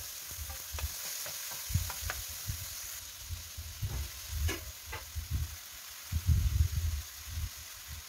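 Oil sizzling in a frying pan as chopped tomato, onion and whole spices are sautéd, with a wooden spatula stirring and knocking against the pan. Potato wedges go in partway through, after which the sizzle eases a little, and the knocks of stirring grow heavier near the end.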